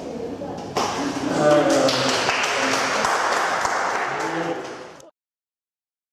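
People talking, with a rough wash of noise under the voices from about one and a half seconds in. The sound cuts off abruptly about five seconds in.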